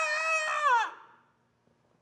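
A man's long, held shout of "Yeah!", steady in pitch, falling away and ending about a second in, followed by near silence: the paper-plate-and-foil speakers give out no music.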